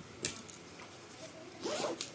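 Zipper on a nylon fishing-rod bag being pulled open in two strokes, a brief one about a quarter second in and a longer, louder one near the end.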